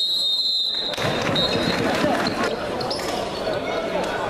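Indoor sports hall with voices chattering and a ball bouncing on the court. About a second of high whistle at the start, then a shorter blast about a second and a half in, typical of a referee's whistle.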